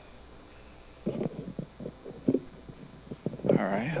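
Handling noise from a handheld microphone as it is picked up off a table and gripped: a run of irregular low thumps and rumbles starting about a second in, with one sharper knock midway. A man's voice starts just at the end.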